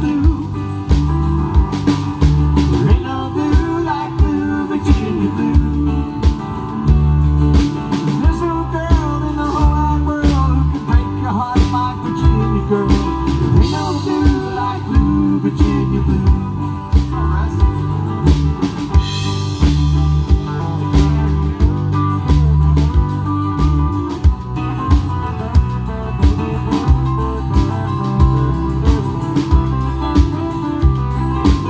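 Live band playing with electric and acoustic guitars, keyboards and drum kit over a steady beat.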